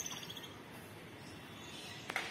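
A high, rapid chirping trill that fades out within about the first half second, followed by faint outdoor background hiss.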